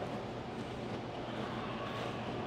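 Steady background hum and hiss of room ambience, with no distinct event.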